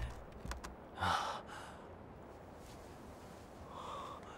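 A man's sharp, breathy gasp of astonishment about a second in, with a shorter breath just after it and a faint one near the end. A few light knocks come just before the gasp.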